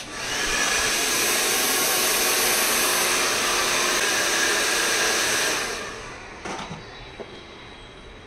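Handheld hair dryer blowing hot air through the hair. It starts just after the beginning, runs steadily with a motor tone under the rush of air, and switches off a little under six seconds in. A few light clicks of handling follow.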